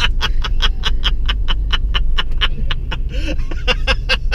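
A person laughing in quick, breathy bursts, about six a second, over the low engine and road rumble of a car cabin.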